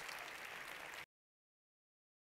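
Large audience applauding, cut off abruptly about a second in, then silence.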